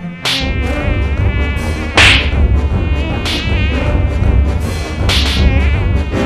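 Mosquito buzzing loudly, its whine wavering in pitch as it circles, swelling sharply four times. A steady low rumble runs underneath.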